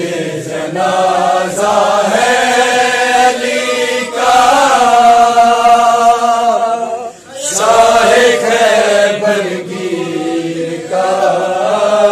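Men's voices chanting an Urdu noha, a Shia lament, unaccompanied, in long drawn-out phrases with held notes, with a short break about seven seconds in.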